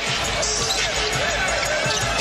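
Basketball game sound on an indoor hardwood court: a ball being dribbled in repeated low bounces, short sneaker squeaks, and steady crowd noise from the arena.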